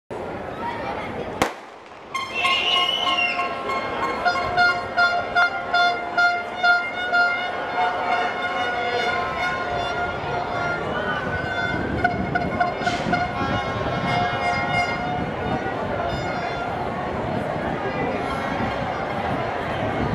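A single sharp crack about a second and a half in, then a stadium crowd cheering with horns blowing long steady notes over it.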